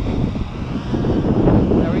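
Wind buffeting the microphone in gusts, a loud low rumble that fluctuates in strength.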